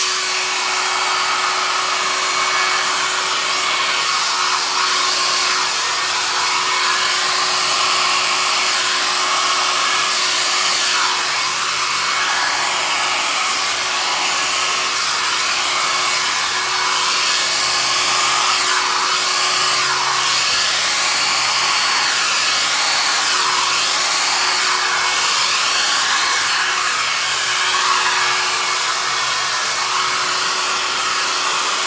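Small Babyliss travel hair dryer running steadily, a continuous rush of air over a steady motor hum, blowing out wet acrylic paint.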